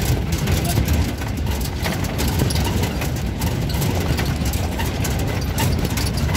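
Engine and road noise of a moving vehicle: a steady low rumble with frequent small knocks and rattles.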